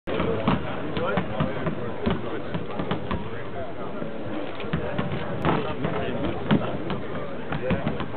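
Several basketballs bouncing irregularly on a hardwood court, with indistinct voices chatting, in a large, mostly empty arena.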